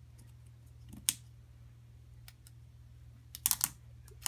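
Plastic shrink-wrap on a hardcover sketchbook being slit and picked at with a craft knife: small crinkly clicks, one sharp click about a second in and a quick cluster of clicks near the end.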